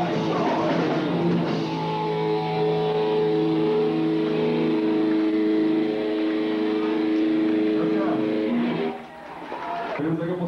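Hardcore punk band playing live with loud electric guitar and drums. The band closes on one held, ringing guitar chord that lasts several seconds and cuts off near the end.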